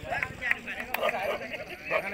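Crowd of spectators talking and calling out, several voices overlapping, with a couple of brief sharp knocks about half a second and a second in.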